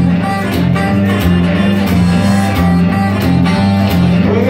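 Acoustic guitar played solo, strumming an instrumental blues riff over a steadily repeating low bass figure, between sung lines.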